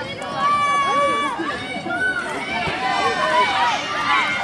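Trackside spectators cheering, with several overlapping high-pitched shouts and calls of encouragement.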